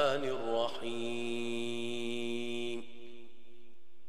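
A man chanting: his voice bends through the end of a melodic phrase, then holds one long, steady note for about two seconds before fading out about three seconds in.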